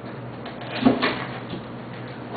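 Cardboard packaging of a laptop box being opened and handled: a few short scrapes and knocks, the loudest just under a second in.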